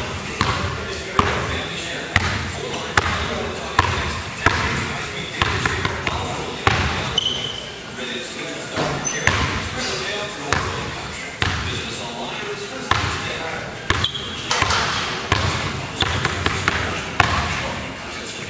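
Basketball dribbled on a hardwood gym floor, bouncing steadily a little faster than once a second, each bounce echoing in the large hall.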